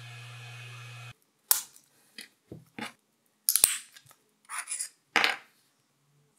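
A 3D printer's fans hum steadily and stop abruptly about a second in. Then come about eight sharp plastic snaps and clicks, some in quick pairs, as printed support material is broken and clipped off a black 3D-printed coil tunnel.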